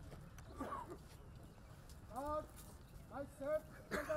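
A man's voice calling out a few short phrases, about two seconds in and again near the end, over low steady outdoor background noise.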